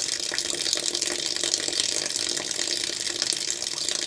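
Hot water from a solar batch water heater running steadily out of its outlet tap, splashing over a thermometer probe held in the stream.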